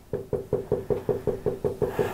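Rapid, even tapping on a hard surface, about seven or eight knocks a second, each with the same short hollow ring.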